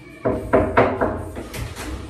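Interior door handle and latch being worked: a quick run of sharp clicks and knocks, about four a second, then two more.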